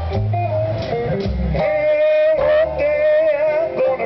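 Live blues band playing, with guitar and bass. From about a second and a half in, a long, wavering held note sits over the band.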